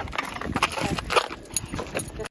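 Footsteps and scuffs on a concrete sidewalk during a dog walk: irregular short taps and scrapes.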